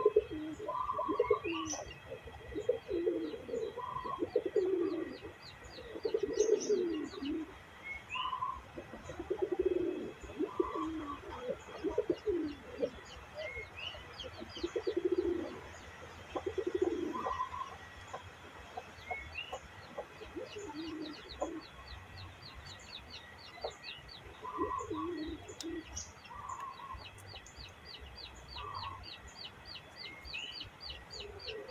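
Domestic pigeons cooing in repeated low, warbling phrases, one every second or two, fewer toward the end. Faint, fast, high chirping runs underneath.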